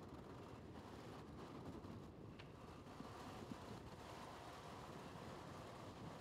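Near silence: faint, steady background noise with no distinct events.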